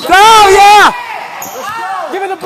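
A loud drawn-out shout close to the microphone, just under a second long with a wavering pitch, followed about a second later by a fainter call. A basketball dribbles on a hardwood gym floor underneath.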